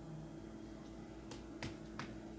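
Two sharp clicks about a third of a second apart, a little over a second in, over a faint steady hum.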